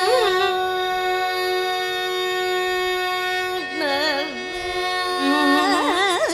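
A woman singing Carnatic classical music with no percussion. She holds one long steady note for about three seconds, then sings phrases with rapid oscillating ornaments (gamakas) near the end.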